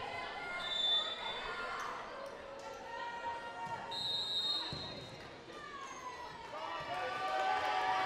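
A volleyball bounced and struck during a serve and rally, with faint voices around it and a short high tone about four seconds in.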